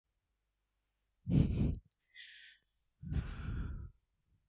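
A man breathing out hard twice into a close headset microphone, the two breaths about a second and a half apart, with a quieter hiss of breath between them.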